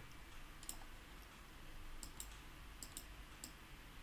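Faint, scattered computer mouse clicks, about six over a few seconds, heard against low background hiss.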